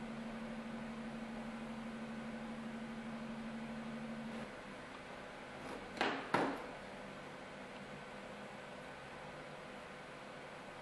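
A steady low hum that stops about four and a half seconds in, then two sharp knocks close together about six seconds in as the copper-foiled glass panel is flipped over and set down on the work board.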